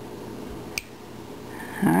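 A small carving knife working the ear of a hand-held wood carving, with one sharp snick a little under a second in, over a steady low room hum.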